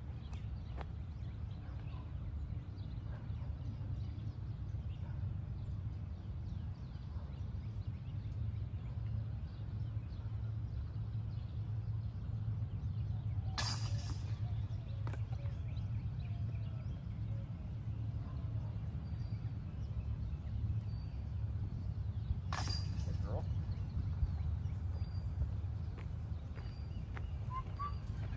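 Steady low outdoor rumble, with two sharp knocks about nine seconds apart in the middle.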